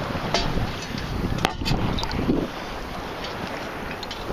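Wind buffeting the microphone over sloshing water while wading with a metal sand scoop, with a few sharp clicks; the noise drops a little past the middle.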